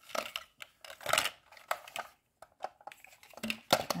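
A series of light clicks and knocks of hard plastic as a plastic toy vending-machine tube and the small plastic capsule it has just released are handled and set down on a table.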